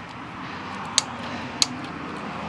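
Plastic ratcheting lever on a hitch bike rack's frame clamp clicking twice as it is ratcheted down tight, over steady low background noise.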